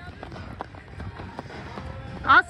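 Outdoor track-meet background: faint voices of the crowd with a steady low wind rumble on the microphone, and scattered light footfalls from runners crossing the finish line.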